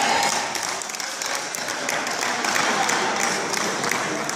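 Spectators applauding: many hands clapping at once, a little louder in the first second and then steady.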